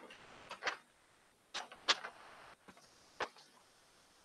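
A handful of sharp, irregular clicks and knocks, about six in four seconds, with a faint hiss between them, picked up by an open microphone on a video call.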